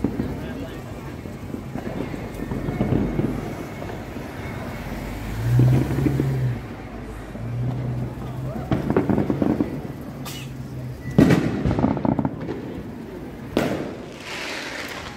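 Fireworks going off: a few sharp bangs in the second half, the loudest about eleven seconds in, over street noise and a low steady hum from about five to eleven seconds in.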